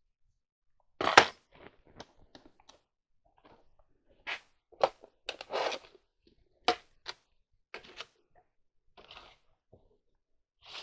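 Irregular knocks, clicks and rustling of small objects being handled and moved about, the loudest a sharp knock about a second in.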